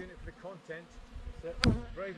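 Honeybees buzzing close to the microphone, the pitch of the buzz wavering up and down as a bee flies around it. A sharp knock sounds about one and a half seconds in.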